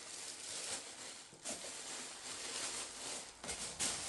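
Tissue-paper wrapping rustling and crinkling as the sheets are pulled open and lifted by hand. There is a sharper crackle about one and a half seconds in and louder crackles near the end.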